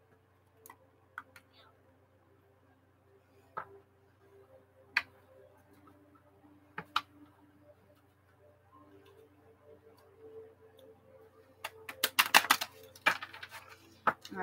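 A deck of oracle cards being handled on a table: scattered soft taps and clicks, then a quick run of rapid card clicks near the end as the deck is shuffled.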